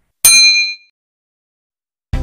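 A single bright bell-ding sound effect, the notification-bell click of a subscribe animation, struck once about a quarter second in and ringing out for about half a second.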